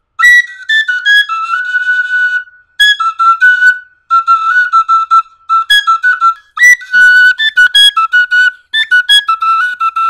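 Igbo oja, a small hand-held wooden flute, playing a fast, high-pitched ornamented melody in short phrases with brief pauses between them.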